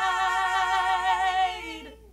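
Two women's voices singing unaccompanied, holding a final note in harmony with a slight vibrato, then fading away near the end.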